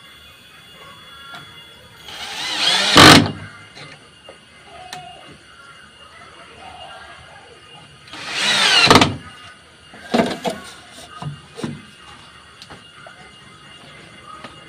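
Cordless drill driving two screws into a wooden door frame through a curtain-rod bracket. The first burst comes about two seconds in and the second about eight seconds in; each is a whir of a second or two that builds and stops abruptly as the screw is driven home. A few sharp knocks follow near the ten-to-twelve-second mark.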